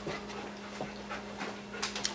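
A dog panting faintly, over a steady low hum.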